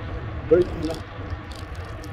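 Steady low rumble of wind on a handheld phone microphone while riding a bicycle, with faint rattling; a man says a couple of short words about half a second in.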